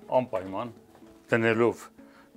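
A man's voice speaking two short phrases.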